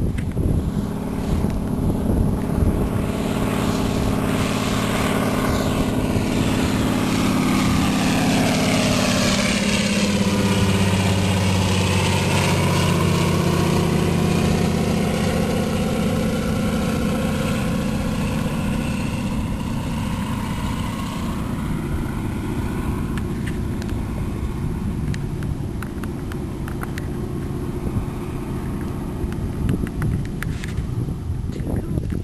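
A propeller-driven floatplane flying over: its engine drone grows louder, drops in pitch as it passes about ten seconds in, then slowly fades away.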